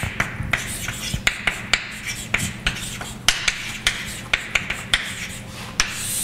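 Chalk writing on a blackboard: an irregular run of sharp taps and short scratches, several a second, as the letters go down, over a steady low hum.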